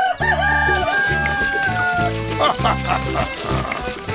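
A rooster crowing once, one long call of about two seconds that falls in pitch at the end, over background music with a steady beat.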